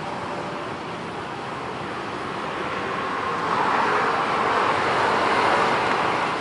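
Steady road traffic noise that swells as a vehicle passes, loudest from about three and a half seconds in.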